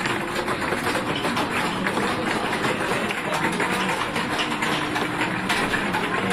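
Steady, dense arcade din from amusement machines, with many small clicks and rattles running through it.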